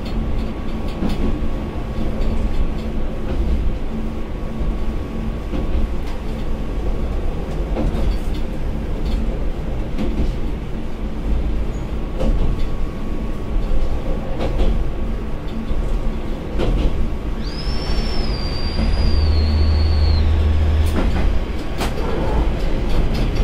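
Diesel railcar running along a single-track line, heard from the cab: a steady low engine and rolling rumble, with wheel clicks over rail joints every second or two. Near the end a high, wavering wheel squeal lasts about three seconds.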